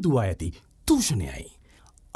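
Speech only: a narrator reading the manifesto aloud in Sinhala, with a short pause near the end.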